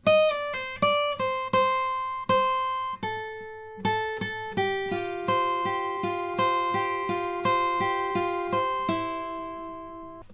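Taylor AD22e acoustic guitar playing a solo phrase in single picked notes. It opens with a pull-off run down the first string, and from about halfway it turns to a quicker repeated picking pattern across the top three strings, which ends on one ringing note.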